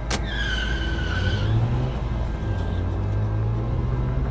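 A car door shuts with a sharp clack, then tyres squeal for about a second and a half as the car pulls away. The engine hums low after that, over background music.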